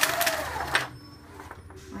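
Garbage truck in the alley: a loud burst of hissing noise for about the first second, then the truck's engine running with a steady low hum.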